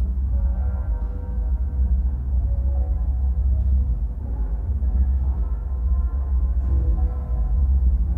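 Playback of a field recording made on an old cassette recorder: a strong, steady low rumble with faint sustained tones above it.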